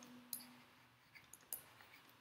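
Faint, sparse clicks of a stylus tapping a drawing tablet while handwriting, about five in all, the loudest just after the start.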